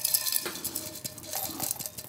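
Dry, tightly rolled oolong tea leaves poured from a tin into a small porcelain dish: a quick, irregular run of light clicks and rattles as the leaf balls land on the porcelain.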